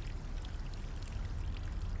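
Faint steady background ambience: a low hum under a light, even hiss, with no distinct events.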